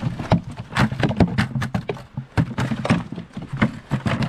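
Frozen chunks of bait meat tipped from a plastic bucket, knocking into wooden trap boxes in a quick, irregular run of hard knocks.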